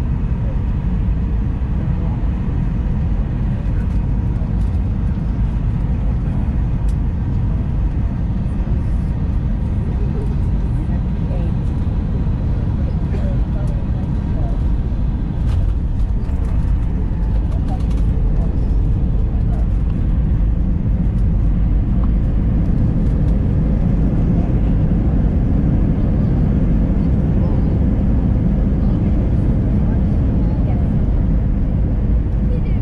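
Airbus A319 cabin noise during landing: a steady low rumble of engines and airflow, growing louder in the last third as the airliner touches down and rolls out with its ground spoilers raised.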